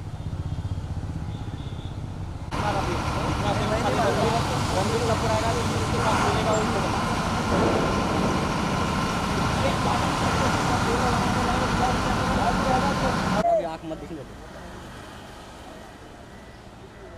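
Outdoor ambience of indistinct overlapping voices and vehicle noise. A low rumble at first, then about two and a half seconds in a louder, busier mix of chatter and traffic that cuts off suddenly near the end, leaving quieter background.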